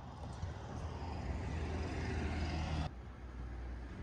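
A passing road vehicle's engine and tyre noise, a steady low rumble that grows louder as it approaches and then cuts off suddenly about three seconds in.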